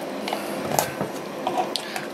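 A few light knocks and clinks from handling glassware, a glass measuring cylinder and jars being moved about, over a faint steady hiss.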